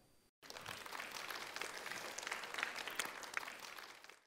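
Audience applauding a speaker, starting about half a second in and holding steady.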